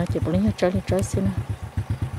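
A small engine running with a rapid, even low pulse, with a man's voice over it in the first half that fades about a second in.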